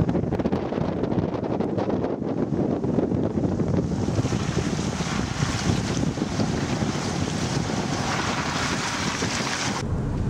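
Steady rushing noise of wind on the microphone mixed with a shallow river running over stones. About four seconds in it grows brighter and hissier.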